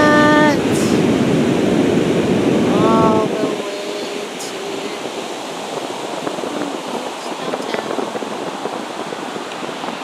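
Large ocean surf breaking and washing ashore, a loud full rumble for the first three seconds that then cuts abruptly to a quieter, thinner hiss of surf. Short voice exclamations come over it at the start and about three seconds in.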